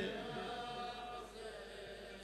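The end of a man's chanted elegy cry of 'Husayn' dying away through a loudspeaker system in a reverberant hall. What remains is faint, with lingering tones over a low hum.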